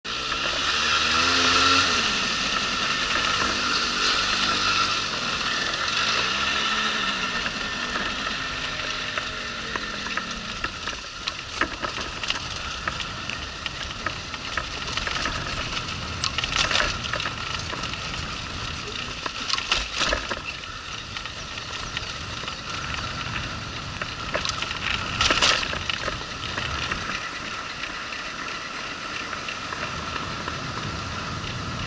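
On-board sound of a small moped riding downhill: a steady rushing noise, with the engine's note rising and falling over the first ten seconds, and a few sharp knocks and rattles later on.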